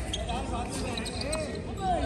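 A tennis ball bounced a few times on a hard court, over voices talking in the background.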